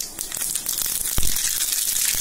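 Mustard seeds sizzling and crackling in hot oil in a small tempering pan, the hiss building steadily. A single dull thump comes just over a second in.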